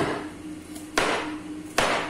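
Kitchen knife chopping through bitter melon onto a cutting board: three sharp strikes about a second apart.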